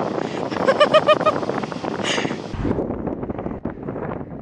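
Surf and wind noise on an open beach, with a short run of laughter about a second in. About two and a half seconds in it cuts to heavier, duller wind buffeting the microphone.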